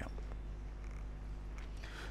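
A steady low hum with faint background noise, even throughout, with no distinct events.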